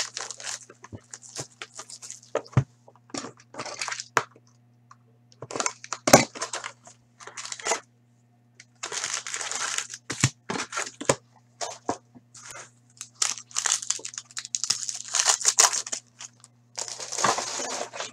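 Cardboard trading-card box being torn open and its foil-wrapped card packs pulled out and ripped: repeated bursts of tearing and crinkling with a few sharp clicks. A faint steady hum runs underneath.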